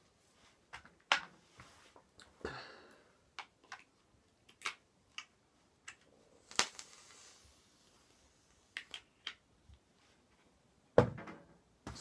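Scattered sharp clicks and light taps from hands handling a small handheld vape box mod, about a dozen irregular clicks with a short rustle among them. A louder burst comes near the end.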